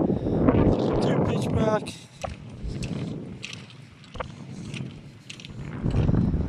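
Wind buffeting the phone's microphone with a low rumble for about two seconds, then quieter open-air noise with a few light clicks.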